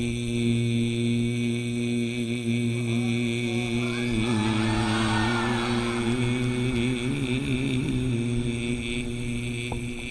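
A man's voice holding one long chanted note of Arabic religious recitation through a microphone and PA. The note stays level at first, then wavers in ornamented turns through the middle, and ends near the end.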